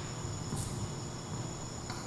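Crickets trilling steadily, a continuous high-pitched sound over low background noise.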